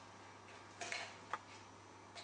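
Faint handling clicks of a coax cable's metal F-type connector and a plastic diplexer housing as the connector is screwed by hand onto the diplexer's input: a brief clatter a little under a second in, then one sharp click.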